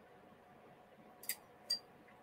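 A man sipping a cocktail from a martini glass: two short, quiet mouth clicks of the sip and swallow, a little under half a second apart, over faint room tone.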